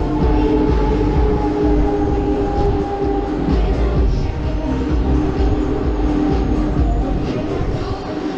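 Huss Break Dance ride running at speed: a steady, heavy low rumble from the spinning cars and turntable, with ride music playing over it.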